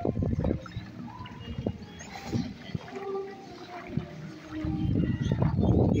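Outdoor ambience: wind buffeting the phone's microphone, with faint, scattered distant voices.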